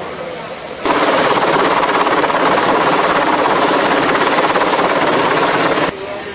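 Loud helicopter rotor noise, a steady roar with a fast beating chop. It starts abruptly about a second in and stops abruptly just before the end.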